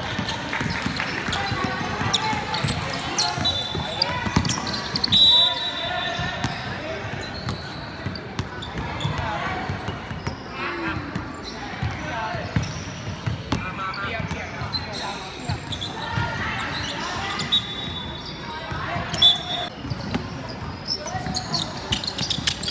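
Indoor basketball game sound in a large, echoing gym: overlapping voices of players and spectators, with a basketball bouncing on the hardwood court. Short high sneaker squeaks come about five seconds in and again near the end.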